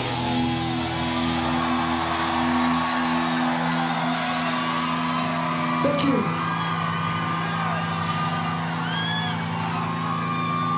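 Electric guitar chord left ringing out at the end of a rock song, with some held notes dropping away partway through, while a crowd cheers and whoops over it.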